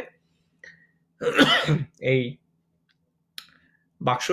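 A man clearing his throat: a rough voiced sound about a second in, then a shorter second one, with a faint click near the end.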